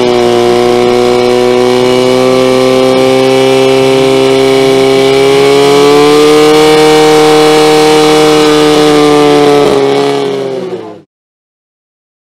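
Portable fire pump engine running at full throttle under load, a loud steady engine note that rises slightly midway as water is pumped through the hose lines. It fades and cuts off abruptly about eleven seconds in.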